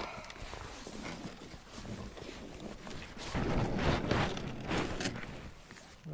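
Footsteps in wellington boots splashing out of shallow water onto sand, with a kayak hull scraping over sand and concrete as it is dragged ashore by a strap. The scraping gets louder about three seconds in.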